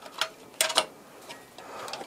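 Sharp plastic-and-metal clicks as an ASUS XG-C100C 10-gigabit PCIe network card is pressed into its motherboard slot: one click just after the start, a louder cluster a little over half a second in, then a few faint ticks.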